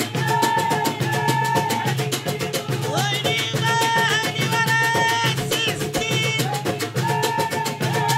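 Moroccan folk music: a group of women singing together in unison over fast, driving hand-drum percussion, the drum strokes dense and even under the held sung phrases.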